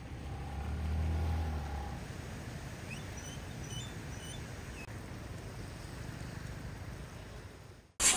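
Ambient sound of a flooded street: a vehicle engine rumbles low in the first two seconds over a steady wash of noise from floodwater and traffic, with a few faint high chirps around three to four seconds in. The sound fades out just before the end.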